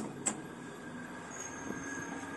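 Two sharp clicks as a floor button on the car panel of a 1970s Mitsubishi SP Type elevator is pressed, then the steady hum of the elevator machinery, with a thin high whine coming in about halfway through.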